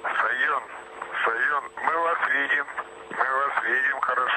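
Speech over a narrow-band radio communications link: a voice on the air-to-ground loop between launch control and the Soyuz crew.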